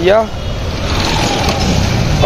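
Busy street traffic: motorcycles riding past close by, heard as a steady, even noise.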